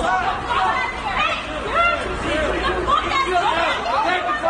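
A crowd of people outdoors, several voices shouting and talking over one another with no single voice standing out.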